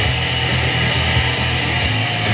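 Electric guitar playing a rock riff in a steady rhythm of about four accented strokes a second.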